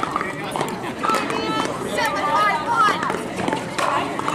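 Voices talking and calling out, with a few sharp pops of pickleball paddles hitting the plastic ball.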